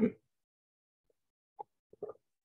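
The tail of a spoken "um", then near-silent room tone from a video call, with a few faint short clicks in the second half.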